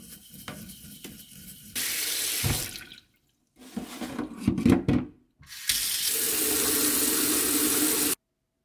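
Kitchen tap water pouring into a stainless steel sink and onto a perforated metal drain strainer basket, running in two steady stretches. Between them come a few sharp metal knocks and clinks as the strainer basket is set into the drain.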